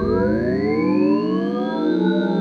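Electronic synthesizer sound: many held tones slide slowly up and down in pitch and cross one another, at a steady loud level.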